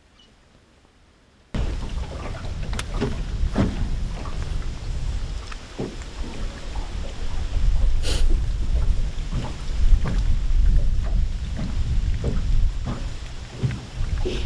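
A boat moving on the water: a loud, rough low rumble with scattered splashes of water against the hull. It starts suddenly about a second and a half in, after near silence.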